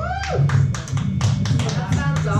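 A run of quick, sharp taps, about five a second, over the steady hum of live instrument amplifiers; a short pitched sound sweeps up and back down at the start.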